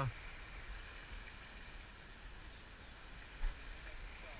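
Quiet outdoor background: a low rumble and faint hiss with a faint steady high tone, and one soft thump about three and a half seconds in.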